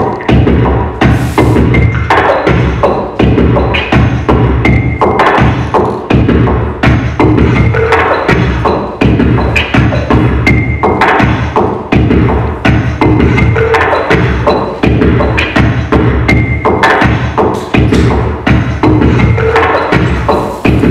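Music with a steady, dense percussive beat: repeated sharp knocks over a deep bass pulse.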